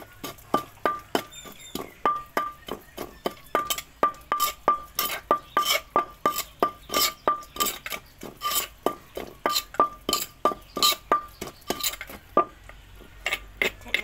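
Wooden pestle pounding chili paste in a clay mortar, steady blows about three a second, each with a short ring, until they stop shortly before the end.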